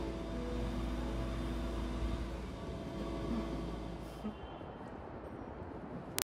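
A steady low mechanical hum with a few faint steady tones. It fades out about halfway through, leaving a quieter background hiss.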